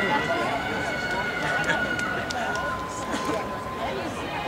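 Indistinct chatter of people at an athletics track, over steady high tones held for a couple of seconds. The tones step down to a single lower one about two-thirds of the way through.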